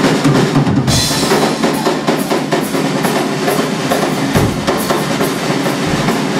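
Drum kit solo played live: a dense, fast run of snare and tom strokes, with deeper bass-drum hits about a second in and again past the middle.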